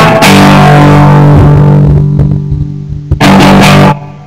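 Stratocaster-style electric guitar: a loud strummed chord left ringing, its low notes fading after about two seconds, then one more loud strummed chord about three seconds in that is cut off sharply just before the end.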